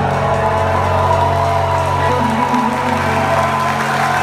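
A live rock band's closing chord ringing out, with guitars, bass and keyboard holding steady tones after the last drum hits, as the audience starts to applaud and cheer.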